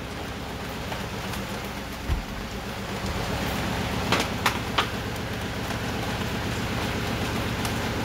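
Steady background hiss, with a low thump about two seconds in and a few light clicks a little after four seconds, as car wiring and plastic scotch-lock connectors are handled.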